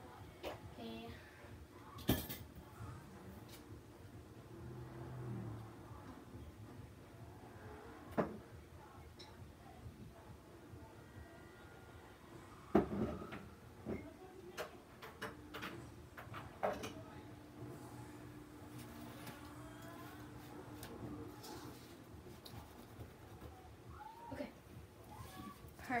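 Scattered knocks and clunks of things being moved about while a room is tidied, a few sharp ones standing out (about two seconds in, about eight seconds in and just past the middle), over a faint voice.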